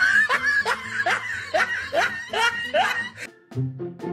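Laughter in a run of about eight short, regular bursts, each rising in pitch, over background music. The laughing stops about three seconds in, leaving the music.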